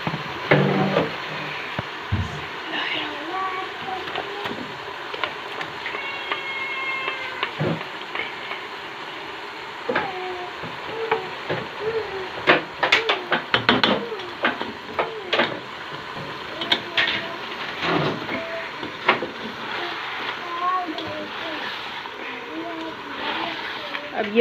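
Chicken pieces sizzling steadily as they fry in oil in a pot, with a slotted spoon scraping and knocking against the pot several times, mostly in the second half, as thick masala paste is added and stirred in.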